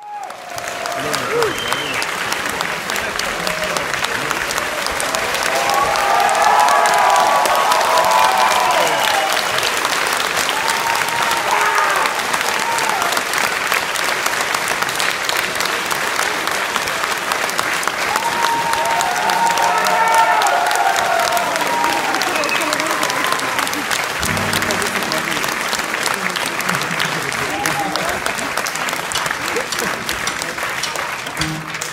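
Concert hall audience applauding steadily, with cheers and shouts rising out of the clapping about six seconds in and again around twenty seconds in.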